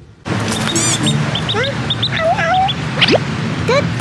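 A duckling peeping: many short, high chirps over a steady background, starting suddenly a moment in.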